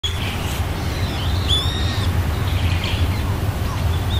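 Birds chirping and calling in short whistled phrases, some gliding in pitch, over a steady low rumble.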